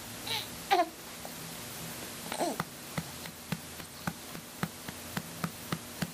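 A baby making a few short babbling vocal sounds, then a run of soft pats on the baby's back, about two a second, from about halfway through: back-patting to bring up a burp.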